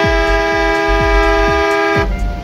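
A horn sounds one long, steady two-tone blast of about two seconds, ending abruptly.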